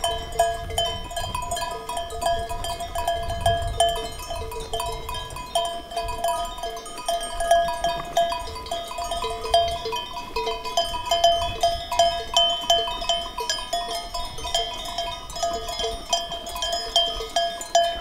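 Bells on a grazing flock of sheep, many small bells at a few fixed pitches clinking irregularly and overlapping without a steady beat.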